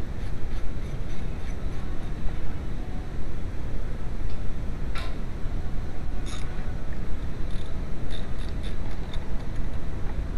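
Hand tools clinking on car parts: a sharp metallic clink about halfway through, another about a second later, and a few light ticks near the end, over a steady low rumble.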